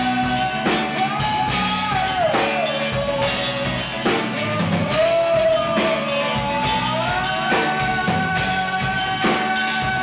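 A small rock band playing live: a drum kit keeps a steady beat under bass and guitars, with a long held melody line that bends slowly up and down.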